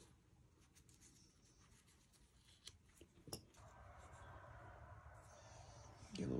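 Near silence, with two faint clicks and then a soft rubbing as a Zippo lighter insert is handled and taken apart by hand.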